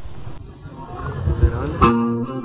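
The opening of a live band recording: a brief burst of hiss, then uneven low rumbling thumps. Near the end a sharp strike sets off a run of guitar notes as the band starts playing.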